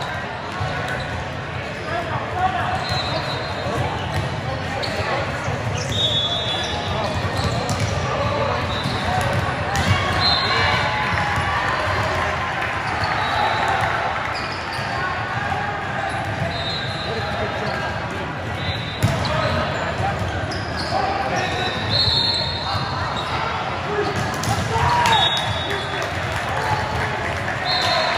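Busy indoor volleyball hall: continuous chatter of players and spectators, with volleyballs being struck and bouncing on the courts in several sharp hits, and short high squeaks now and then, all echoing in the large hall.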